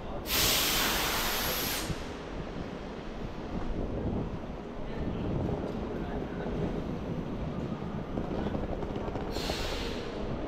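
Compressed air venting from a stationary passenger train's pneumatic system: a sharp hiss lasting about a second and a half just after the start, and a shorter hiss near the end, over a steady low station rumble.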